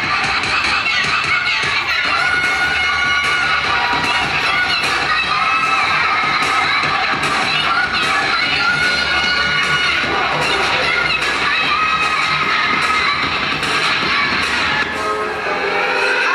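Loud dance music playing for a routine, with a crowd of children and spectators shouting and cheering over it.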